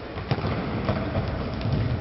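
Echoing sports-hall noise of a futsal game in play: players' footsteps and a ball kick, with a sharp knock about a third of a second in, over a steady low rumble.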